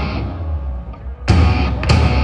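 Live punk rock band with electric guitars and drum kit. The band's sound fades for about a second, then the full band crashes back in with a loud hit, and another just before the end.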